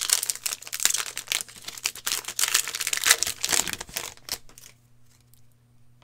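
Plastic wrapping of a trading-card blaster box and pack crinkling and tearing as it is ripped open, a dense run of crackles that dies away about four seconds in.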